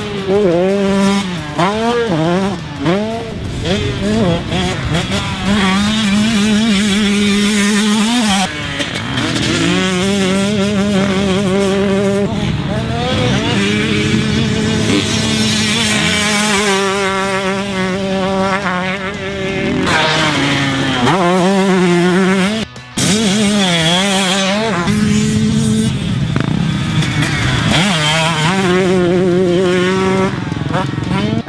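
A 2020 KTM 125SX single-cylinder two-stroke motocross engine being ridden hard on a dirt track, its pitch repeatedly climbing as it revs out and falling back as the rider shifts and rolls off. The sound drops out suddenly for a moment about three-quarters of the way through.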